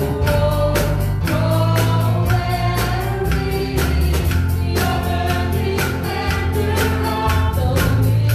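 A church worship team of several singers singing a worship song together into microphones, with live keyboard and band accompaniment over a steady beat.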